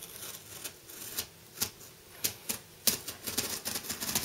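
Box cutter blade slitting the packing tape along the seam of a cardboard shipping box: scattered sharp clicks and scratches, becoming a denser crackle near the end.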